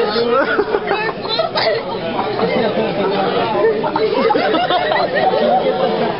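Several young voices chattering at once, overlapping and too mixed for any words to stand out.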